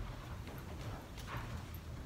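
Irregular light footsteps and scattered soft knocks of people walking and kneeling in a church, over a low steady room hum.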